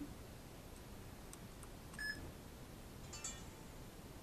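A Looney Tunes Tweety MP3 player's small built-in speaker giving a short electronic beep about two seconds in, then another brief tone about a second later, as the player powers on.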